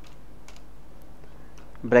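A few faint keystrokes on a computer keyboard, spaced apart, over a low steady hum.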